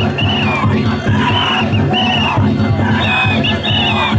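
Danjiri float's festival music (narimono): drums beating a fast, steady rhythm with a high melody line over it, amid a crowd of festival-goers.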